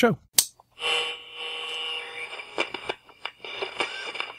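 Radio-transmission static: a sharp click, then a steady hiss with a hum of several steady tones, breaking up into scattered crackles and clicks after about two seconds, as on a radio link.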